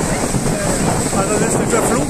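Wind buffeting the microphone, with people's voices rising over it from about halfway through.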